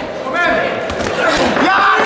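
Voices calling out around a kickboxing ring. Two sharp impacts from gloved punches or kicks landing fall about a second and a second and a half in.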